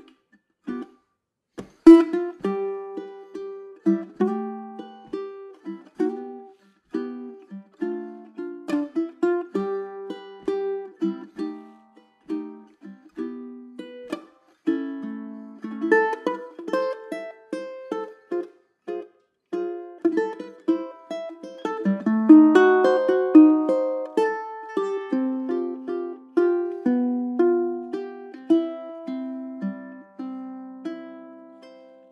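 Low-G tenor ukulele, a 2021 Pat Megowan Lyric Tenor, played solo in chord-melody style: a swing tune of single plucked melody notes and chords. A sharp chord comes about two seconds in, and there is a busier, louder stretch about two-thirds of the way through.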